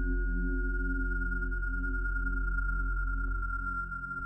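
Dark ambient background drone: a thin high tone held steadily, sinking slightly in pitch, over a low sustained hum.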